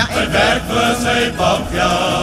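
Cape Malay choir singing a comic song: a male soloist and the male choir behind him, in quick sung syllables that settle into a held note near the end.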